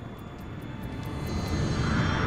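Jet airliner engines (Embraer 190 turbofans) running at high power on the runway, a steady rumble that grows louder toward the end.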